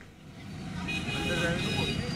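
Street traffic ambience with vehicles and faint, indistinct voices, fading in and growing louder.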